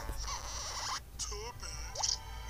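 Cartoon film soundtrack heard from a TV: a hiss-like noise near the start, then a brief pitched vocal sound about one and a half seconds in, with no clear words.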